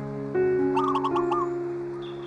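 Soft piano music with sustained notes, a new chord struck about a third of a second in. Over it, a songbird gives a quick run of short chirps about a second in.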